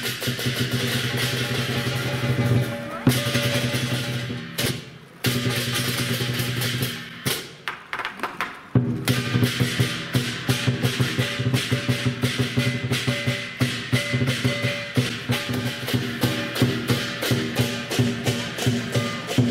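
Lion dance percussion: a Chinese drum beaten in fast strokes with cymbals crashing and a gong ringing. It drops out briefly about four and a half seconds in, goes sparse for a couple of seconds about seven seconds in, then resumes with a loud stroke about nine seconds in.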